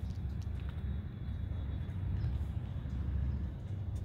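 Ford Coyote 5.0 V8 in a Factory Five Cobra idling, a steady low rumble.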